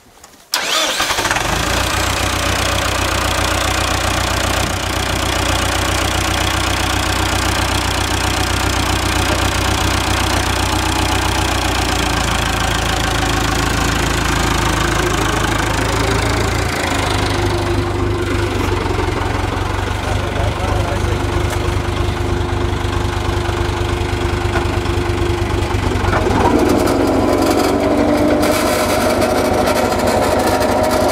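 Massey Ferguson 275 tractor's four-cylinder diesel engine starting about half a second in, then running steadily and loudly. Its sound shifts about 17 seconds in and grows a little louder near the end.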